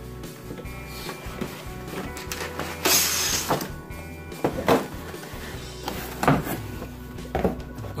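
Cardboard packaging being handled: a white inner box slides out of its printed outer sleeve with a scraping rustle about three seconds in, followed by several knocks and thunks as the box is set down and its lid opened. Background music plays underneath.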